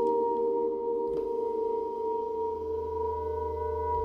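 Critter & Guitari Pocket Piano synthesizer holding a steady chord of pure, sine-like electronic tones, a high note ringing above a cluster of lower ones. A low hum swells underneath in the second half.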